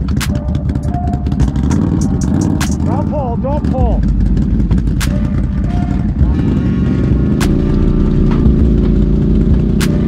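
ATV engine running in deep mud, its drone growing louder and steadier about six seconds in, with sharp knocks scattered through.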